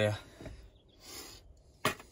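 Handling of a dashboard loudspeaker just pulled from its opening: a soft rustle, then a single sharp click near the end.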